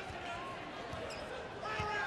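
A basketball being dribbled on a hardwood court: a few separate bounces under a steady arena crowd noise.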